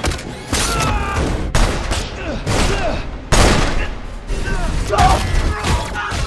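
Film fight-scene sound: a rapid string of punches, blows and metallic impacts between two men, with grunts and shouts of effort. The loudest hit comes sharply a little past halfway.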